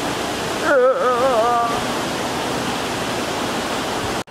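River water rushing steadily through a rocky gorge below a bridge, a constant loud wash of water noise. A short, wavering vocal sound from a person comes through about a second in.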